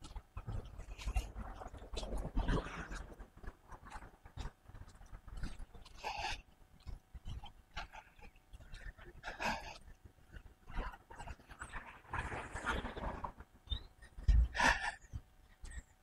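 A person breathing heavily through the microphone while walking, an irregular breath every two to three seconds, over a faint low rumble.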